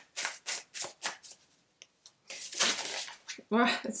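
An oracle card deck being shuffled by hand: a quick run of short card strokes in the first second, a pause, then a longer rustle of cards about two and a half seconds in.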